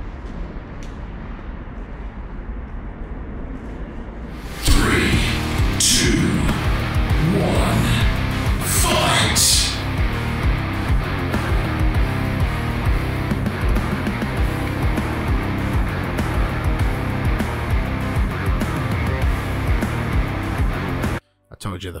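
Mixed soundtrack playback: the steady hum of a large train-station interior room tone, then a hard-hitting music track kicks in suddenly about five seconds in, with a reverberant voice counting down "three, two, one, fight" over its first few seconds. The music cuts off abruptly just before the end.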